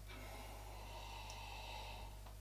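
Faint breathing and sipping as two people drink beer from stemmed glasses, over a low steady electrical hum.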